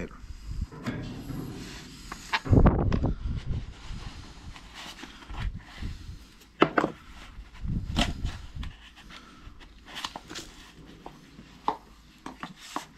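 Handling noises of a plastic tractor work light being held and opened: scattered clicks, taps and rustles, with a loud low rumble about two and a half seconds in.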